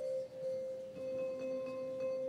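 Music: a single clear note held steady, with a lower note joining about a second in.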